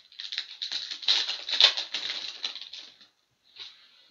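Plastic wrapper of a trading card pack crinkling as it is opened by hand: a dense crackling that stops about three seconds in.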